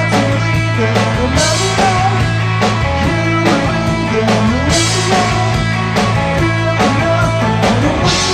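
Rock band demo playing: guitar, bass guitar and drum kit together, with a steady bass line and cymbals.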